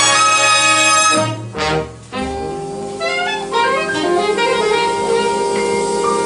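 Big band jazz played live: a loud full-band chord that breaks off about two seconds in, then a quieter passage of held horn notes with a rising run, saxophones prominent.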